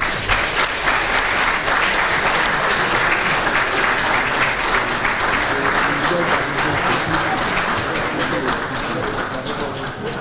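An audience applauding, a dense, steady clatter of many hands clapping that eases a little near the end.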